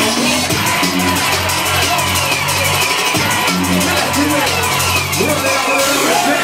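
Loud electronic dance music from a DJ set over a club sound system, with a pulsing bass line and a few sliding pitch sweeps.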